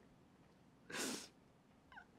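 A crying woman takes one short, noisy breath about a second in.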